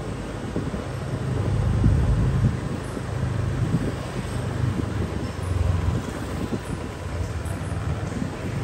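Wind buffeting the microphone over the low rumble of riding along on a motorbike, rising and falling unevenly.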